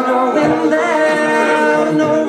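A man singing unaccompanied into a microphone, holding long sung notes with a slight waver in pitch about a second in.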